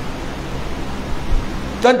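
A steady hiss of background noise fills a pause in a man's speech. His voice comes back in near the end.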